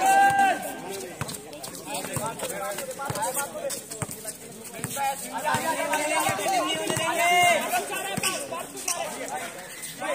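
Basketball players shouting and calling to each other across an outdoor concrete court, with running footsteps and scattered thuds of the ball being dribbled. The voices are busiest in the second half.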